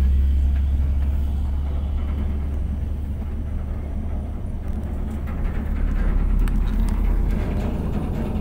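Low, steady rumble of a vehicle driving along a road at night, engine and road noise heard from on board.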